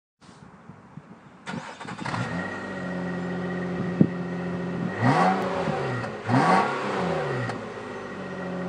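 A car engine starts up and settles into a steady idle, then is revved twice, each rev rising and falling in pitch. A single sharp click sounds about halfway through.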